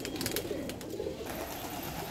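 White domestic turkey tom in full strut giving a low, cooing drum, with a few faint clicks in the first half second.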